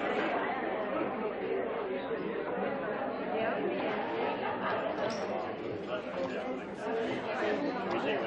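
Many people talking at once: a steady babble of party conversation, with no single voice standing out.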